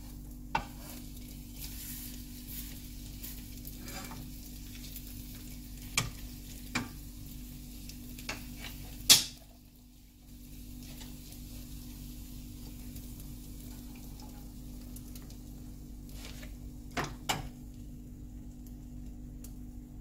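Egg frying with a faint sizzle in a nonstick frying pan while a wooden spatula scrapes and knocks against the pan as the omelette is rolled. Scattered sharp knocks: the loudest comes about nine seconds in, and a quick pair comes near the end.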